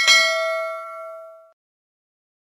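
Notification-bell 'ding' sound effect: one sharp strike whose several ringing tones fade out over about a second and a half.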